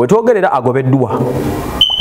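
A man speaking, then near the end a short, high-pitched electronic beep that lasts about half a second.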